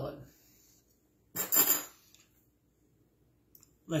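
Metal cutlery clinking and scraping briefly against a ceramic plate about a second and a half in, followed by a faint click near the end.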